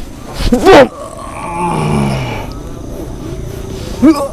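A man's short, sharp fighting yell about half a second in, followed by a lower, drawn-out growl.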